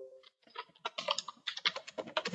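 Computer keyboard being typed on: a quick run of keystrokes starting about half a second in.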